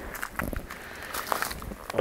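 Footsteps on dry leaf litter and twigs: a few irregular crackling steps.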